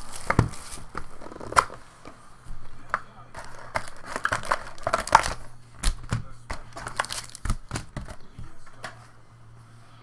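Panini Crown Royale football card box being opened by hand: foil-wrapped packs and wrapping crinkling and tearing, with scattered sharp taps and crackles of handled cardboard over a faint low hum.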